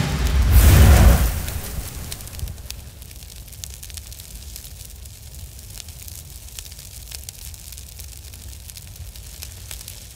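Intro sound effects: a deep boom about a second in that dies away, followed by a steady crackle of flames with scattered sharp pops.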